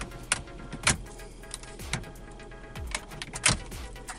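Plastic wiring-harness connectors being unclipped from the button panels on the back of a truck's dash bezel: several sharp clicks and rattles of hard plastic, the loudest about a third of a second in, near one second and near the end.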